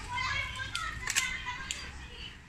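Children's voices chattering and playing in the background, with a few sharp clicks as pincer-style cutters bite into the dry deadwood of a bonsai trunk.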